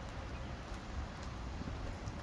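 Small fire of wood and dryer lint burning in an open dish: a faint, steady crackle and hiss of flames with a low rumble.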